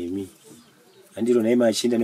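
A man's deep voice: a short sound at the start, a pause, then from about a second in a loud, low, drawn-out vocalization.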